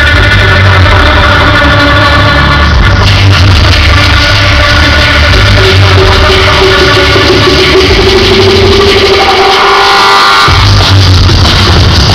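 Loud electronic dance music built live from looped beatboxing and electronics, played through a club PA. The heavy bass cuts out for about a second near the end and then comes back in.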